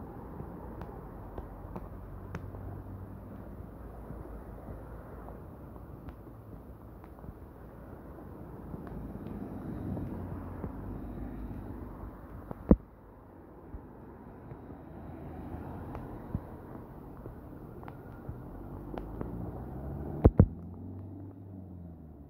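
Steady hiss of heavy rain on a flooded road, with a passing lorry's engine and tyres swelling near the end. A few sharp knocks stand out, one about midway and a close pair near the end.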